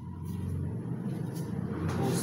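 Low vehicle engine rumble that grows steadily louder.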